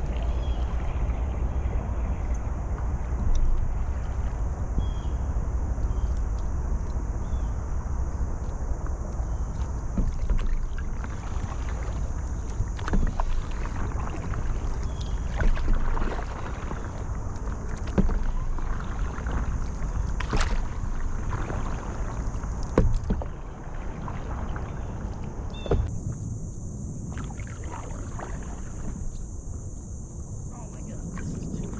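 Paddle strokes dipping and splashing irregularly, every second or two, as a stand-up paddleboard moves through shallow water, over a steady low wind rumble on the microphone mounted low on the board.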